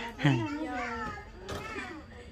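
People talking close by, with a child's voice among them.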